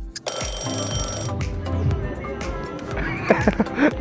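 Background music with a steady beat; about a quarter second in, an alarm-clock ring sounds for about a second. Near the end a man's voice rises and falls in pitch.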